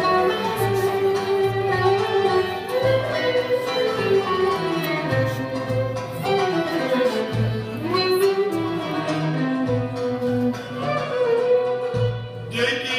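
Live music from a stage band: an instrumental passage of a song, a melody line moving over a bass line that changes note every second or so.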